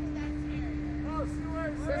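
A steady machine hum held at one pitch over a low rumble, cutting off just before the end. Laughing and a voice come in about halfway through.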